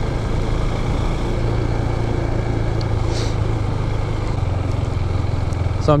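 2018 Husqvarna Svartpilen 401's single-cylinder engine running steadily at low speed as the bike is ridden, a low, even hum whose note drops slightly about four and a half seconds in.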